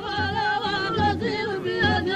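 A man singing an Amazigh folk song into a microphone, his voice wavering and trilling in ornamented turns, with a few low thuds underneath.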